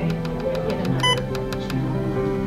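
Alaris infusion pump sounding its infusion-complete alarm: one short electronic beep about a second in, part of a beep that repeats about every two seconds. Background music plays under it.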